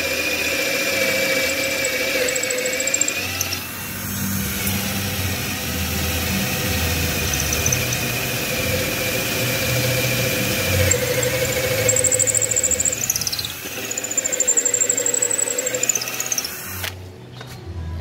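A Makita 12 V Ni-MH cordless drill boring an 8 mm bit into very hard wood, its motor whining steadily under load. It briefly eases about four seconds in. A high squeal rises and falls in the second half, and the drill stops shortly before the end.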